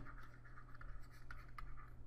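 Faint scratching and light taps of a stylus writing a word on a tablet screen, over a low steady hum.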